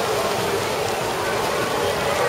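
Steady wash of splashing water from several swimmers racing freestyle.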